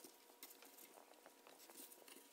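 Faint rustling and scattered light ticks of nylon paracord strands being braided by hand.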